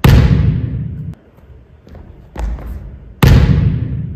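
A volleyball hitting the gym floor with two loud thuds about three seconds apart, each dying away over about a second in the hall's echo; a softer knock comes shortly before the second.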